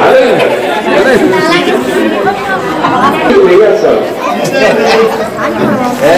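A group of children chattering, many voices talking over one another at once.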